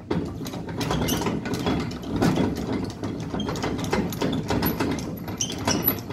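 A horse float's jockey wheel being wound up by its crank handle, the screw mechanism turning with a steady run of mechanical clicking.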